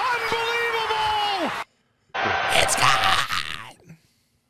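A football play-by-play announcer's long, held yell over a cheering stadium crowd, falling in pitch at the end and cut off suddenly about one and a half seconds in. After a short silence comes a burst of laughter.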